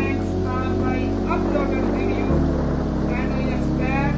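Soft background music of sustained, held chords with a low bass note that changes about halfway through, under a man's voice.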